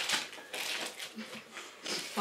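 Rustling and crinkling of gift packaging being handled and opened, in short irregular bursts.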